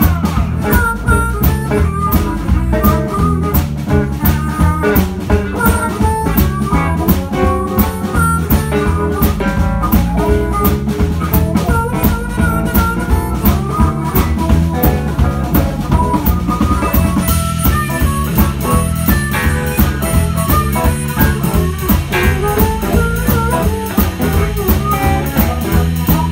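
Live blues band playing an instrumental passage with no singing: harmonica cupped to a vocal microphone, over guitar, electric bass and a drum kit keeping a steady beat.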